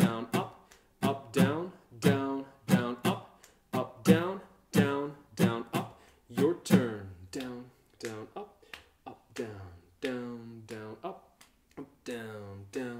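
Steel-string acoustic guitar strummed in the basic rock strum pattern (down, down-up, up-down-up), repeated several times in a row with the fretted chord ringing between strokes. The strokes come about two to three a second and grow softer in the second half.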